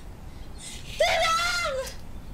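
A young woman's voice shouting one long, high-pitched call for help about a second in, held for just under a second.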